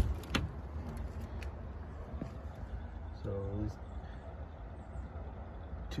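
Metal door latch of a cabinet smoker clicking open, two sharp clicks at the start, followed by a steady low rumble as the door swings open.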